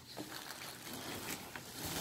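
Faint rustling and crinkling of plastic wrapping against a cardboard box as a toddler lifts a plastic-wrapped gift out of it.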